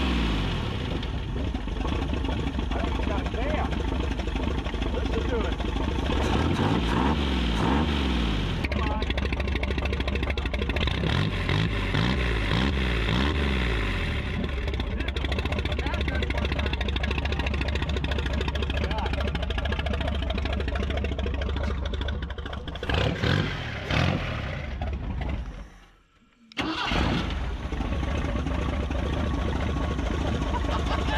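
Engine of a 1983 AMC Eagle SX/4 running after being brought back to life, revved up and down several times in the first half, then running more steadily with an upper-end clatter. The sound drops out briefly about 26 seconds in, then comes straight back.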